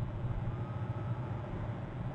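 Steady low rumble with hiss, the outdoor ambience picked up by a wildlife webcam's microphone. A faint, thin rising whistle comes in about half a second in and lasts under a second.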